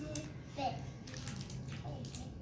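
A small child's brief, soft vocal sounds, twice, over short scratchy rustling noises.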